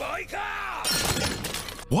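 Anime soundtrack dialogue with a brief shattering crash about a second in, followed by a short laugh.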